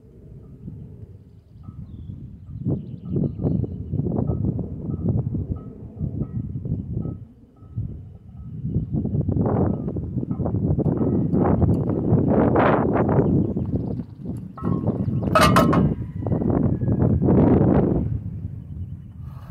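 Wind buffeting the phone microphone in irregular gusts, growing stronger in the second half. About three-quarters of the way through comes a sharp metallic clank with a short ring, as iron plate-loaded farmer's walk handles are set down on the ground.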